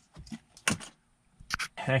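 A few short, sharp clicks and light taps, spaced out in a quiet pause, with a word of speech starting at the very end.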